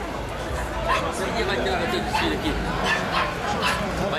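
Several people talking at once: a hubbub of market chatter, with no single voice standing out.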